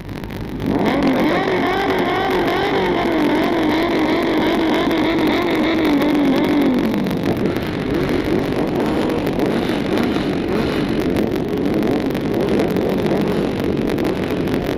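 Sportbike engine revved hard and held at high revs, its pitch wavering up and down for several seconds before dropping back about seven seconds in; the engine runs on lower afterwards.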